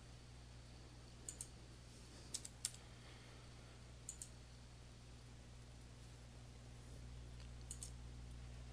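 A few faint clicks from a computer keyboard and mouse, some in quick pairs, scattered over a low steady hum: keys pressed while a date is corrected, then the mouse button.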